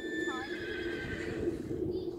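A horse whinnying: one high call of about a second and a half that sags slightly in pitch.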